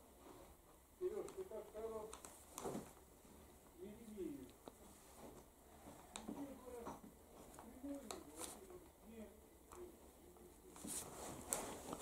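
Faint, murmured speech in short phrases, with a few light clicks between them. The speech grows louder just before the end.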